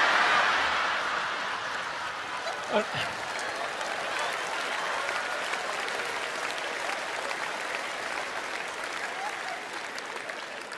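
Large theatre audience applauding, loudest at the very start and easing off a little over the following seconds.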